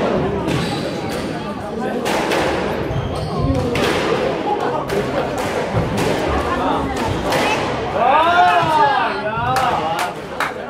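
A squash rally: the rubber ball is struck by the rackets and hits the court walls, making sharp knocks about every one to two seconds.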